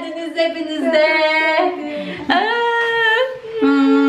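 Women's voices in a series of long, drawn-out notes, each held for about a second, sung or cheered with excitement rather than spoken.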